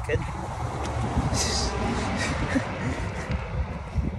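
Wind buffeting the microphone, a steady rumbling rush with a brief brighter hiss about a second and a half in.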